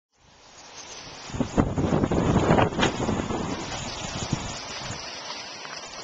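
Wind buffeting the microphone, a rumbling noise that swells strongly in the middle, with two sharp knocks about a second and a half and three seconds in.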